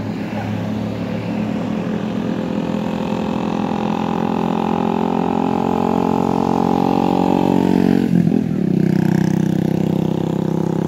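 A motor vehicle's engine on the road, growing steadily louder as it approaches, then passing close by about eight seconds in, when its pitch drops and a lower engine note carries on.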